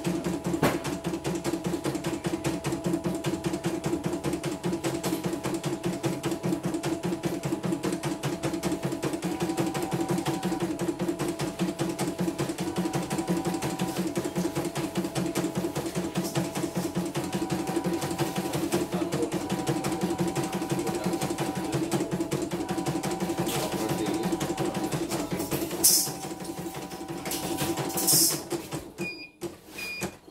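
Computerized home embroidery machine stitching at speed: a rapid even needle rhythm over a steady motor whine. Near the end come a couple of louder clacks, then it stops and gives two short beeps.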